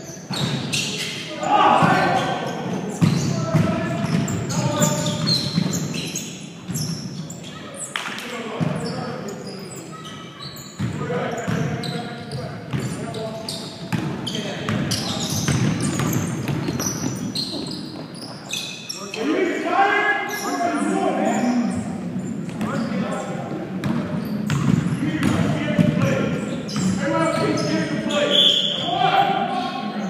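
Basketball bouncing on a hardwood gym floor during play, a run of sharp thuds throughout, echoing in the large hall, with players' voices calling out over it.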